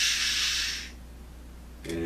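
A man shushing: one long "shhh", the sign to keep quiet, fading out about a second in.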